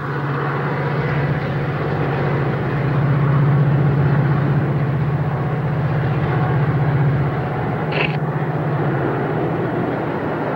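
Metra diesel commuter train crossing an elevated bridge: a steady low locomotive engine drone over wheel-on-rail rumble, swelling in the middle and easing as the train moves away. A brief high squeak sounds about eight seconds in.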